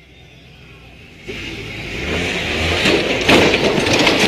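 Off-road vehicle engine running, getting louder from about a second in, with a growing rush of noise over it.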